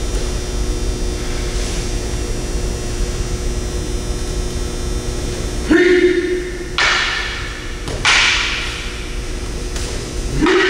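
Steady hum in a large hall, then just before the last four seconds a short loud call from a voice, followed by two sharp slaps about a second apart, each ringing briefly in the room: bodies breakfalling onto the mat during aikido throws.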